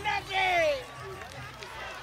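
A voice calling out twice in the first second, the second a long, high note falling in pitch, over a low steady background.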